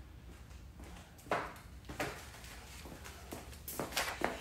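A handful of light, scattered knocks and taps from someone moving about off-camera, the loudest about a second in and another near the end, over a low steady hum.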